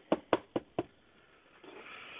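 Four quick, sharp knocks of a rigid plastic trading-card case being tapped, about four a second, followed near the end by a soft rustle of the case being handled.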